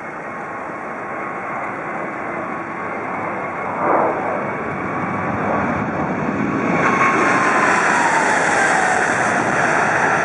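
Boeing 777-300ER's GE90-115B turbofan engines running at take-off thrust during the take-off roll, growing steadily louder as the jet closes in. From about seven seconds in the sound turns louder and hissier, and an engine whine falls in pitch as the aircraft passes.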